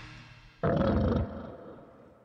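A break in goregrind music: the band stops dead, and about half a second later a single deep growl sounds for just over half a second, then fades out slowly.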